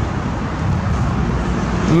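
Road traffic noise: a steady low rumble of cars with a hiss above it.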